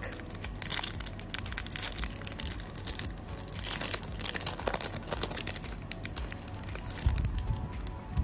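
Shiny foil wrapper of a basketball trading-card pack being torn open and crinkled by hand, a dense run of irregular crackles and rustles.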